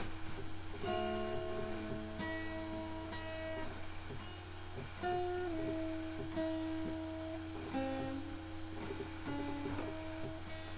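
Acoustic guitar picked slowly, single notes ringing for about a second each, some sliding into the next pitch, over a steady low hum.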